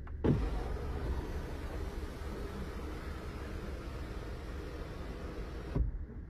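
The Volvo V90 Cross Country's electric panoramic roof motor runs steadily for about five and a half seconds after a button press on the overhead console. It starts with a thump and stops with another thump as the roof reaches the end of its travel.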